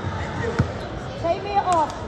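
A basketball bouncing on a hardwood gym floor, with a hard bounce about half a second in and a couple more near the end, over voices in the gym.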